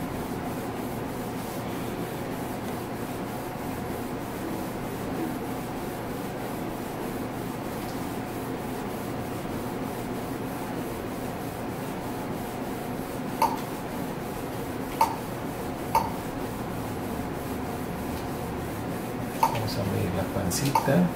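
Steady low hum and rubbing noise of an ultrasound examination. In the second half there are a few short, light clicks, as the ultrasound console's controls are pressed to place measurement calipers.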